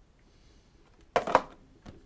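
A person's short laugh about a second in, with a smaller sound near the end, against quiet small-room tone.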